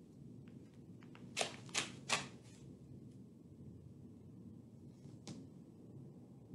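Rigid Leukotape strapping tape being pulled off its roll in three short, sharp rips about a second and a half in, with one more near the end.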